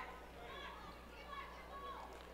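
Faint voices of players and spectators in a school gymnasium, calling out and chatting.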